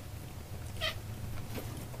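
A single short, faint animal call about a second in, over a low steady hum.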